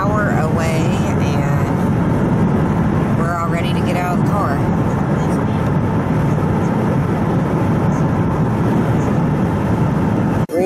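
Steady, loud road and engine noise inside a car's cabin at highway speed, heavy in the low end. Snatches of a voice come through briefly near the start and again about three seconds in.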